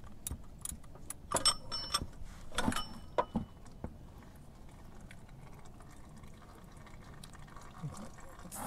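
Irregular metal clicks and clinks of a ratchet and cap-style filter wrench turning the Honda Gold Wing GL1800's oil filter loose, a few with a brief ring. After about four seconds there is a faint steady trickle of oil running from the loosened filter into the bucket.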